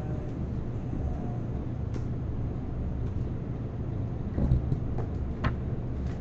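Room tone: a steady low hum, with a few faint clicks about two seconds in and again near the end.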